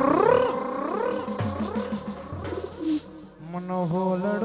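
Live garba band music: a gliding lead melody over drums, which briefly drops away about three seconds in before the music picks up again.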